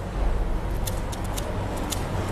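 Steady low rumble of background room noise, with a few faint, short ticks about a second in and again near the end.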